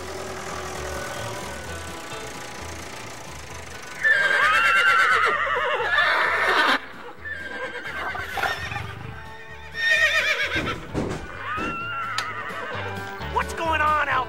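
Horses whinnying: loud quavering calls that fall in pitch, breaking in about four seconds in, again about ten seconds in and in a quick series near the end, over soft background music.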